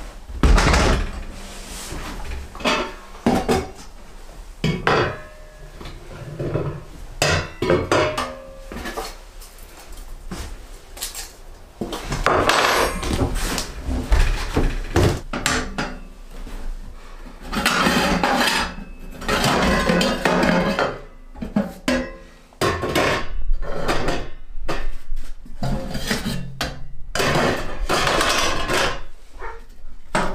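Steel wood-burning stove being unpacked and handled: irregular metal clanks and knocks as its glass door is opened and parts inside are shifted, with longer stretches of rustling in between.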